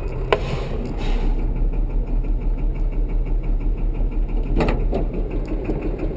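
LMTV military truck's diesel engine idling, heard from inside the cab as a steady low rumble. A sharp click and a short hiss come about half a second in, and another click comes shortly before the end.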